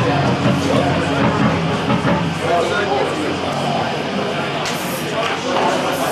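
Indistinct voices and chatter in a live music hall between songs, with held amplified guitar notes over the first two seconds or so.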